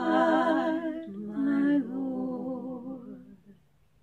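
One woman's voice layered with itself in three-part a cappella harmony, holding long notes with vibrato. The chord fades out about three and a half seconds in.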